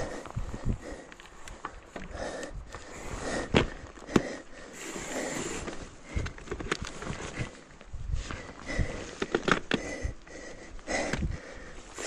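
A mountain biker's sniffing and breathing close to a chest-mounted camera, with irregular knocks, clicks and scuffs as he handles his mountain bike on the trail.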